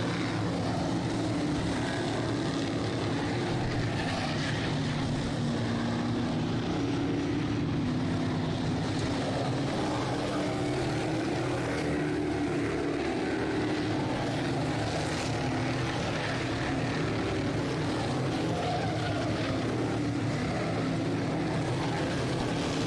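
A field of Sportsman modified race cars lapping a dirt oval, their engines blending into a steady, overlapping drone.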